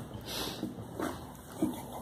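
Very young Border Collie puppies whimpering: about four short, high cries, the loudest near the end, with light rustling of fur and bedding as they crawl about.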